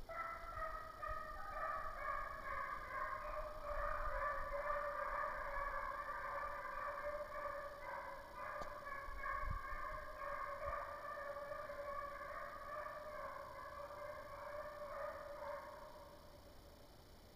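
Several young Walker hounds baying in chorus as they run a deer, a continuous overlapping howling that fades near the end.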